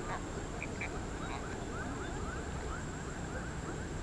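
A chorus of small animal calls from the riverbank: short chirps repeating about four times a second over a thin, steady, high whine.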